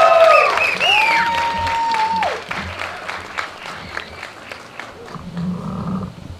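A crowd applauding and cheering, with several long held whoops in the first two seconds. The clapping then thins out and fades away over the rest.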